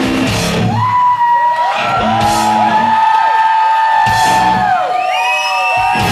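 Live heavy metal band: after a moment of full band, the drums and bass drop out and an electric guitar holds long high notes with swooping pitch bends. The full band comes back in at the very end.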